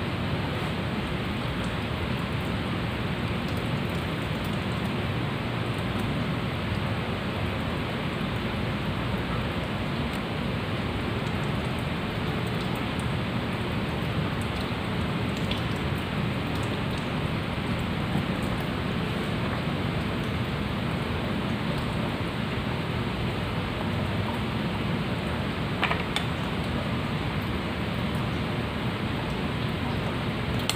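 A steady, even rushing hiss with no pitch to it, unchanged throughout, with a couple of faint clicks, one about halfway through and one near the end.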